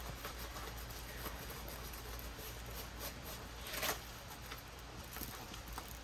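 Faint rustling and crinkling of a stiff diamond-painting canvas being handled and rolled the other way off camera, with one slightly louder crinkle just before four seconds in, over a steady low hum.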